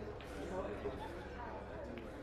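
Faint, indistinct murmur of voices from people in a pub bar, slowly fading.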